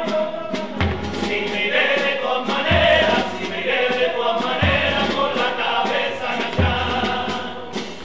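Chirigota carnival chorus of men singing together, backed by a bass drum beat about every two seconds and quicker sharp percussion ticks.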